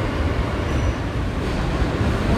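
Steady rumble of an R160 subway car running along the track, heard from inside the car.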